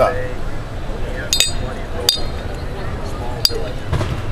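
A spoon clinking against a glass dish and a ceramic pour-over cone as ground coffee is scooped into a paper filter. There are three sharp, ringing clinks: about a second and a half in, at two seconds, and near the end. A steady murmur of voices runs underneath.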